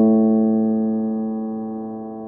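A single keyboard chord held and slowly fading, with no new notes struck.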